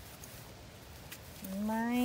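Faint outdoor background hush for about a second and a half, then a woman's voice comes in on one long, drawn-out word that rises slightly in pitch.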